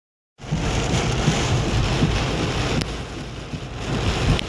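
Heavy rain drumming on a car's roof and windshield, heard from inside the cabin as a dense, steady noise with a deep rumble under it. A single brief click about three seconds in.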